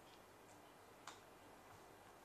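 Near silence with a few faint, short clicks of small plastic dice being set down and handled, the clearest about a second in.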